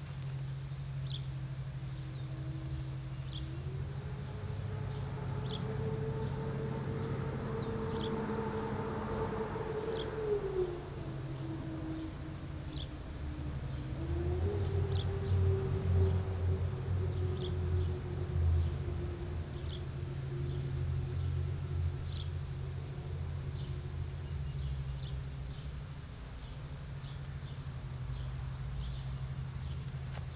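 A motor running steadily, its pitch rising about four seconds in, dropping about ten seconds in and rising again about fourteen seconds in, over a constant low rumble. Short high chirps repeat every second or two.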